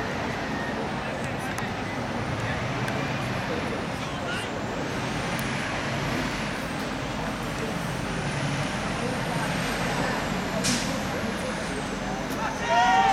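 Outdoor ambience beside a football pitch: a steady rushing rumble of wind and distant traffic, with faint, distant players' voices. A single sharp knock comes near the end.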